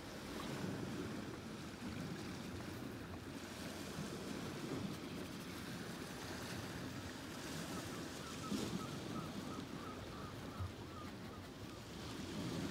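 Steady rush of sea waves breaking on the shore, with some wind.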